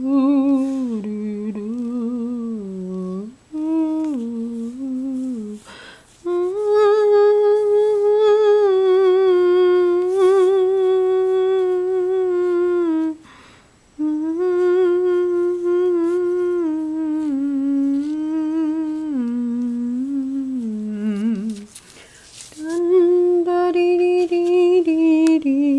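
A voice humming a slow, wordless tune with long held notes, breaking off briefly a few times.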